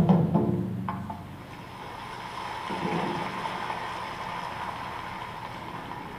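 Japanese taiko drums end on a loud strike that rings out over the first second, with one more light hit just before the second mark. A steady wash of applause follows, swelling around the middle.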